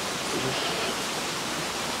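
Steady background hiss with no rhythm or clicks, and a faint murmur of voice about half a second in.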